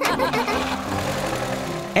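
Cartoon car engine sound effect as a small car drives off and runs steadily along, with background music underneath. Brief laughter comes right at the end.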